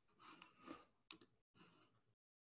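Near silence: faint room noise with a couple of sharp, faint clicks a little past one second in.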